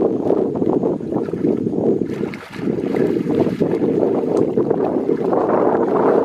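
Steady low rumbling noise of wind buffeting the microphone, dipping briefly about two and a half seconds in.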